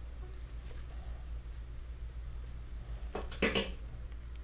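A paintbrush mixing watercolour paint on a palette: soft scratchy brushing, with a brief louder scrubbing stroke about three seconds in, over a steady low hum.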